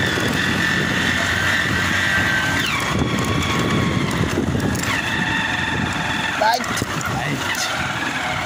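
Motorcycle running as it rides along a rough stony dirt road, with a dense low rumble of engine and road noise and a steady high whine running through it.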